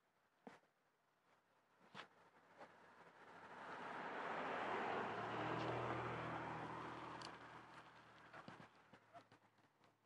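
A car passing on the road: its engine and tyre noise swell over a few seconds, peak about halfway through and fade away. Two sharp knocks come in the first two seconds.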